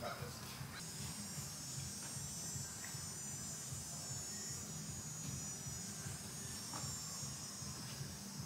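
Outdoor summer ambience: a high, steady buzzing sets in about a second in and fades near the end, over a continuous low hum.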